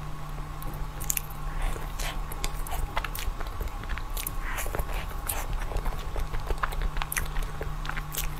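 Biting and chewing of a soft purple-and-white dessert, close to a clip-on microphone, with many quick irregular sharp clicks from the mouth and food.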